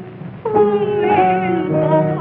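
Female voice singing a held, sliding note with a wide vibrato over piano accompaniment, entering about half a second in after a brief lull, on a thin early sound-film recording.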